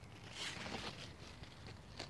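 Faint rustling from large squash leaves and stems brushing past as the camera pushes in among them, loudest briefly about half a second in, with faint scattered ticks after.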